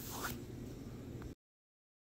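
Faint scrape of an Apple Pencil tip sliding on the iPad's glass screen as it drags the brush-size slider, with a light tick about a second in. The sound then drops to dead silence.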